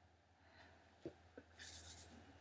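Near silence in a small room. There are two faint short clicks about a second in, then a brief soft rustle near the end as a pair of hands is rubbed and clasped together.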